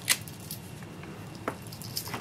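A few light clicks from a clear acrylic stamp block pressed on cardstock and lifted off. The sharpest click comes just after the start, with fainter ones about half a second and a second and a half in.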